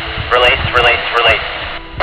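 Two-way radio transmission: a voice comes through in a burst of hiss, narrow and tinny, cutting off sharply just under two seconds later.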